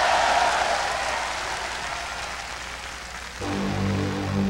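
Concert audience applauding and cheering, the applause fading away; about three and a half seconds in, the band starts playing with low, sustained notes.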